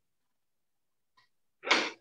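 A person's single short, sharp burst of breath near the end, after about a second and a half of silence.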